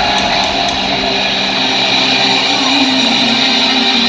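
Electric bass solo played live through an arena PA, loud, steady sustained notes.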